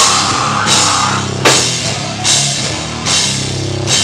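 Live metallic hardcore band playing at full volume: heavy distorted guitars and drums come in abruptly at the very start, with loud drum and cymbal accents about every 0.8 seconds.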